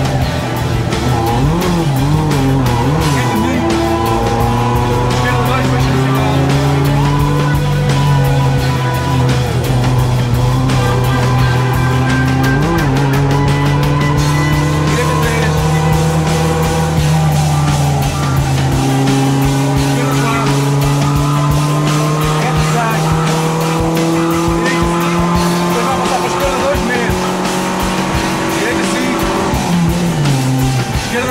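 Renault Clio 1.2's four-cylinder petrol engine pulling hard under load, heard from inside the cabin, its pitch climbing slowly and dropping back a few times through the run.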